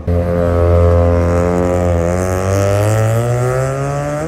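Black Mazda RX-7's engine running loudly as the car drives past, its pitch holding steady, dipping slightly midway, then climbing as it revs up near the end.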